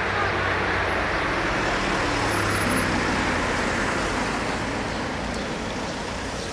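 Road traffic noise: a motor vehicle's engine and tyres running by on the road, steady and easing off somewhat in the second half.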